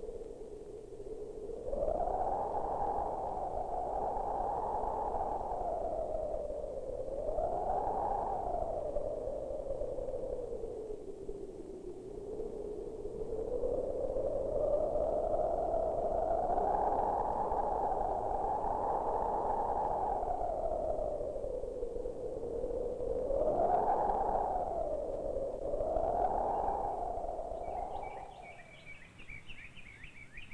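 An eerie electronic tone slowly sliding up and down in pitch, with a few quicker upward swoops, over a low hum. It fades out shortly before the end.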